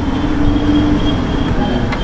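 Steady low rumble of room background noise with a faint high-pitched whine, a low hum that fades out about three-quarters of the way in, and a single click near the end.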